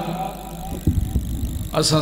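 Microphone handling noise: a few low thumps and knocks about a second in as the microphone is gripped and moved, between phrases of a man's amplified speech, over a steady low hum.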